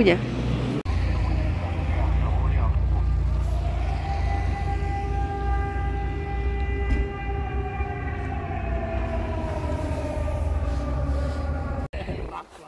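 A train passing, its long drawn tone swelling and then sliding slowly down in pitch as it goes by, over a steady low rumble.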